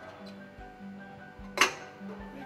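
A stainless steel pump chamber is set down onto the stacked impeller assembly of a Grundfos SP submersible pump: one sharp metal knock with a short ring about one and a half seconds in. Background music plays throughout.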